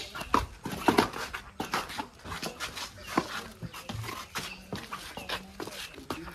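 A dog whimpering and yipping in many short calls.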